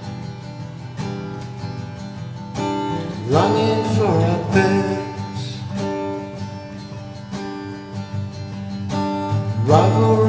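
Guitar-led instrumental passage of a song, with sustained chords and notes that bend upward about three seconds in and again near the end.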